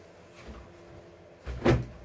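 A pair of denim jeans laid down onto a table with a short soft thump of fabric, about one and a half seconds in, after a faint rustle.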